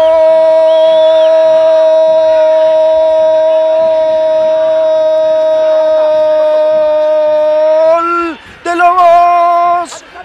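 A Spanish-language football commentator's drawn-out goal call: one long "gol" held at a steady pitch for about eight seconds, cut off, then held again for about a second near the end.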